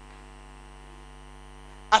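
Steady electrical mains hum, a stack of unchanging tones at an even level, the kind picked up by a microphone and sound-system chain. A man's voice comes in right at the end.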